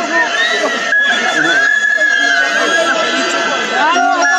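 Loud crowd of protesters blowing whistles, many shrill blasts overlapping over a dense din of crowd voices and shouting.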